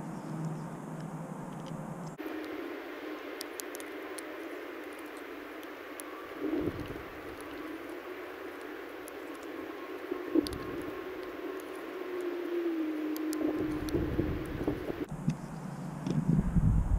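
Crimped terminals being pushed into a white plastic multi-pin connector housing, each latching with a faint small click, over a steady background hiss. Two low handling thumps come partway through.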